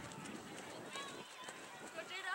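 Faint, distant voices calling out across an open soccer field during play, over light outdoor background noise.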